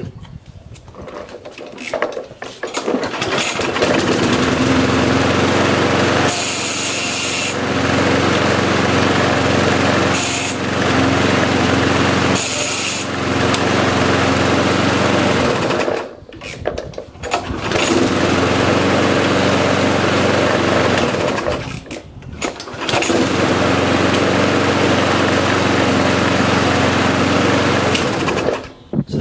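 Briggs & Stratton 35 Classic single-cylinder petrol lawnmower engine pull-started with its recoil cord. It catches within the first few seconds and then runs steadily, with two brief drops in sound about 16 and 22 seconds in.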